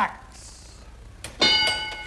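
Game-show answer-board bell: a short click, then a single ding about a second and a half in that rings briefly and fades. It marks a survey answer turning over on the board.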